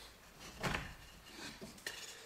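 Sawn juniper wood strips knocking and clattering against one another as they are handled in a stack: one clear wooden knock about two-thirds of a second in, then a few lighter clicks near the end.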